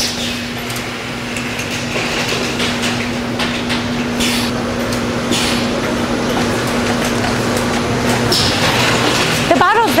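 Automatic bottling line machinery running: a steady motor hum from the spindle capper and bottle conveyors, with light clatter and three short hissing bursts. The hum drops out about eight seconds in.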